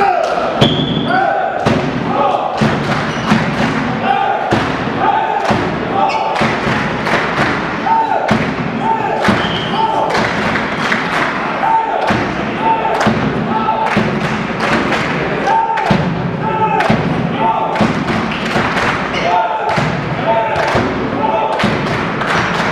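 Volleyball spectators chanting in a steady rhythm over regular thumps, the same short call and beat repeating again and again throughout.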